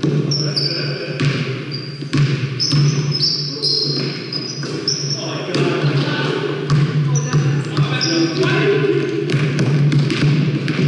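Pickup basketball on a hardwood gym floor: the ball bouncing and sneakers squeaking in many short, high chirps, with players' voices echoing in the large hall over a steady low hum.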